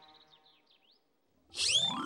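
Cartoon-style sound effects: faint twittering whistle glides, then about one and a half seconds in a loud rising whistling sweep with curving high whistles on top.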